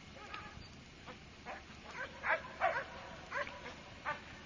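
Doberman dog giving a run of short, high yips and whines, about six of them in the second half.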